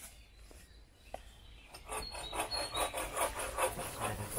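Wooden poles scraping and rubbing against each other as they are handled into place, a quick run of scraping strokes starting about two seconds in after a near-quiet start with a single click.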